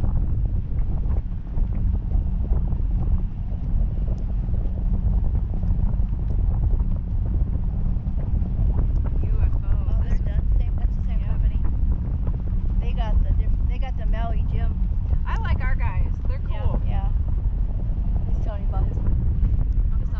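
Wind buffeting a camera microphone on a parasail rig aloft, a steady low rumble with hiss above it.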